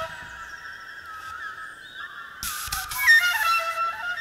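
Solo flute played live: a soft, sustained figure of overlapping notes in the first half, then a breathy rush of air about two and a half seconds in and a louder run of notes near the end.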